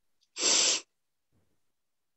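A woman's single audible breath, about half a second long, between phrases of speech.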